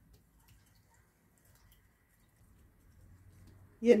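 Near silence: faint room tone with a few very faint light clicks, then a woman's voice begins just before the end.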